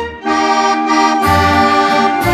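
Accordion-led dance orchestra playing an instrumental passage of a waltz from a 78 rpm record: held chords over a bass note that returns about once a second on each bar's downbeat.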